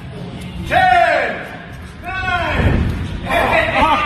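Men's voices shouting in a large room: two loud drawn-out calls, falling in pitch, about one and two seconds in, then overlapping excited chatter near the end, with a few dull thuds in between.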